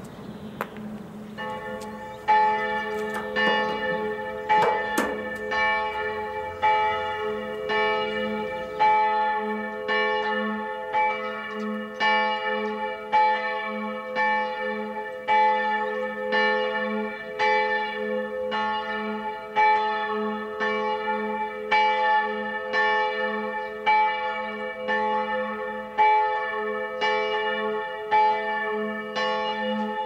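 Church bells ringing, starting about two seconds in, with strokes about once a second over a steady low hum.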